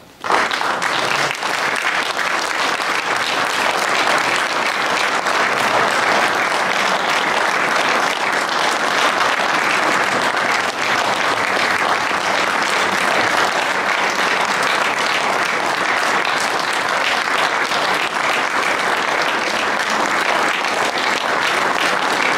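Audience applause that breaks out suddenly and keeps up at a steady level.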